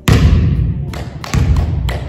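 A volleyball bouncing twice on a wooden gym floor, two heavy thuds about a second and a half apart, each with a boomy echo off the hall.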